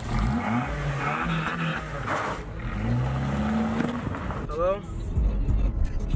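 Honda Accord's engine revving as the car pulls away, its pitch rising twice.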